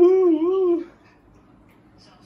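A single long, loud, wavering vocal call with a steady pitch that rises and dips a few times, ending suddenly a little under a second in.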